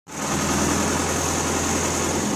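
Crane's engine running steadily under load as it hoists an overturned pickup truck on slings, a low hum with a steady high hiss over it.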